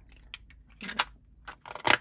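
Hard plastic bullion capsule being handled and fitted around a one-ounce silver bar: a few light clicks and scrapes, ending in one sharp, louder click as the capsule snaps together.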